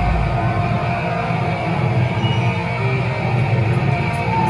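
Live thrash metal band playing, with distorted electric guitar and drums.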